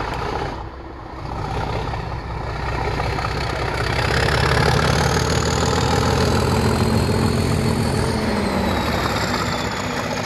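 Class 37 diesel locomotive's English Electric V12 engine working under power as it passes, growing louder to a peak about halfway through and then easing. A high turbocharger whistle rides over the engine and falls in pitch as the locomotive goes by.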